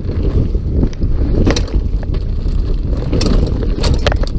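Mountain bike riding fast down a forest dirt trail: wind buffeting the action camera's microphone over the rumble of the tyres on the dirt, with a few sharp rattling clacks from the bike over the rough ground, the loudest near the end.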